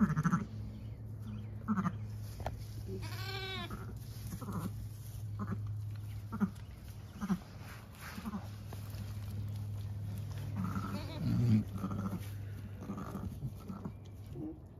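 A newborn lamb gives one high bleat about three seconds in, rising and falling in pitch. Around it are a string of short, low calls, typical of a ewe murmuring to her freshly born lamb as she noses it.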